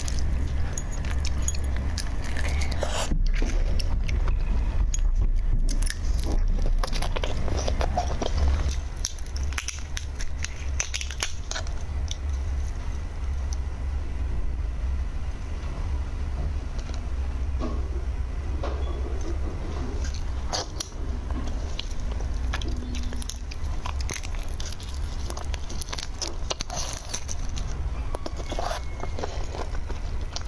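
Raw red shrimp being pulled apart and peeled by hand close to the microphone: a run of irregular crisp shell cracks and wet clicks, with chewing, over a steady low hum.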